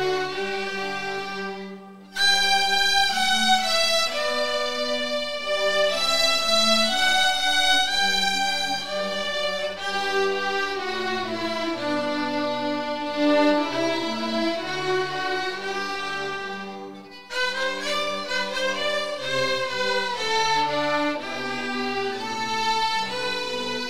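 A fourth-grade string orchestra of violins and cellos playing a piece together in sustained bowed notes, with short breaks between phrases about two seconds in and again about seventeen seconds in.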